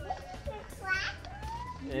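Small children's voices: a brief high-pitched child's call about a second in, then a short rising sound from a child's voice.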